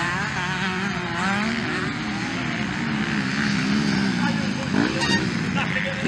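Dirt bike engines revving up and down as motorcycles race around a dirt track, the pitch rising and falling through the corners.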